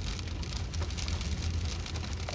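Steady background noise inside a car cabin: a low rumble under a dense scatter of fine ticks.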